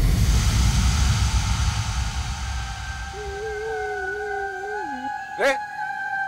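A cinematic impact hit from the background score, with a long low rumbling tail that fades over about three seconds. A held, wavering eerie tone follows and dips at its end, then a sharp rising swoosh comes near the end over sustained high drones.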